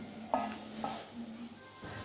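Aluminium pot lid lifted off a pot of pulao at the end of its dum (steaming), with two light metal clinks, about a third of a second and nearly a second in, each ringing briefly.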